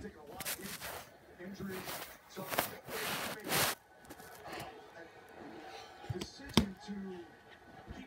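Rustling and brushing noises close to the microphone, loudest in the first four seconds, then a single sharp knock about six and a half seconds in.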